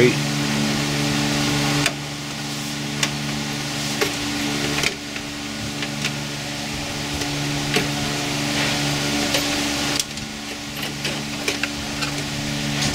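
A few sharp clicks and taps of plastic and metal as a 2.5-inch SSD in its drive bracket is worked loose from a desktop computer's drive bay. A steady low hum runs underneath.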